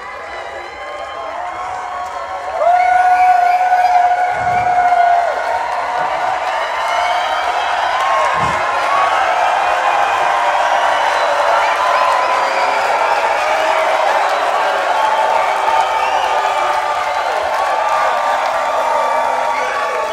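Large live-music crowd cheering, whooping and shouting, swelling sharply about two and a half seconds in, with one long held shout rising above the rest just after the swell.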